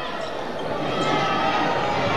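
Indoor basketball game ambience: a ball being dribbled on a hardwood court over a steady murmur of crowd voices in the gym.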